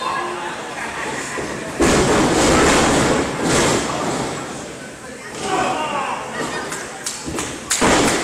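Impacts in a wrestling ring: a sudden loud crash about two seconds in that runs on for a couple of seconds, then a few sharp smacks near the end, with voices calling out between them.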